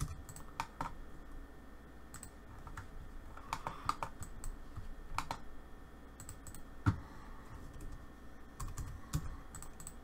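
Irregular keystrokes and clicks on a computer keyboard as commands are entered, with one louder knock about seven seconds in.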